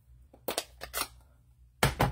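Light clicks and taps of clear acrylic stamp blocks and a plastic ink pad case handled on a tabletop, then one sharp, loud click near the end as the ink pad's plastic lid is snapped open.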